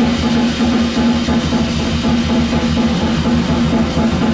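Live jazz played by a drum kit with cymbals and a plucked upright double bass, a continuous, even groove.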